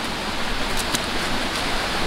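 Steady rushing background noise of running water, like a nearby stream, with a couple of faint clicks about a second in as the throw bag's top is handled.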